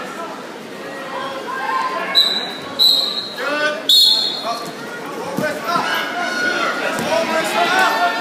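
Referee's whistle blown in three short blasts, the last and loudest about four seconds in, over a hall full of voices and chatter.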